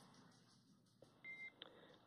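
Near silence, then a short, high electronic beep lasting about a quarter of a second, with faint clicks around it. It is a radio communications tone on the mission's voice loop, coming between the crew's altitude callout and the reply.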